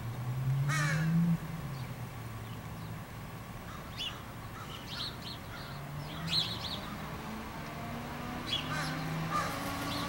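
A crow calling once, a short harsh caw under a second in, over a low hum that rises in pitch. Faint high chirps follow through the rest.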